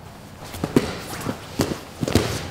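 Grapplers' bodies, hands and feet thudding and slapping on a foam mat during a fast jiu-jitsu scramble, a handful of sharp hits with the loudest a little under a second in.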